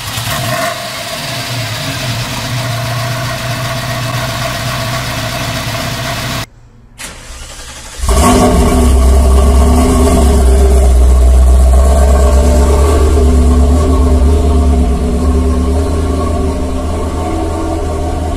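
1982 Ferrari Mondial Quattrovalvole's V8 running steadily for the first six seconds or so. After a cut, a 1984 Ferrari 288 GTO's twin-turbo V8 starts suddenly about eight seconds in and runs loud and steady with a deep rumble.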